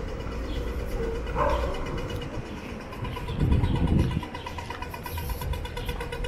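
City street ambience: a steady low traffic rumble that swells as a vehicle passes a little past halfway, with a rapid electronic beeping, several pulses a second, through the second half.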